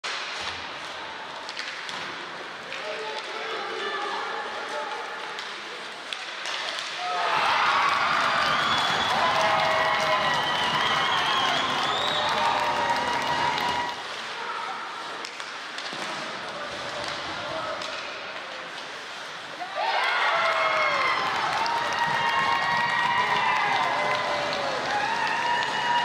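Ice hockey game in an arena: puck and stick knocks over the murmur of spectators. About seven seconds in, and again near twenty seconds, the crowd breaks into loud cheering and shouting for several seconds, the cheers for goals.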